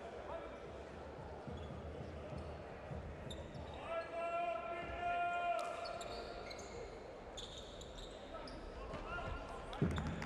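Basketball game sound in a large hall: a ball bouncing on the hardwood court, short shoe squeaks and players' and spectators' voices. A steady held tone sounds for about a second and a half about four seconds in.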